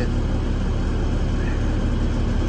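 Truck engine idling steadily, a low even rumble heard from inside the cab, kept running for heat in the cold.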